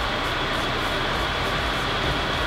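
Steady background noise with a faint high whine running through it and no distinct events: the constant room noise of a large gym hall.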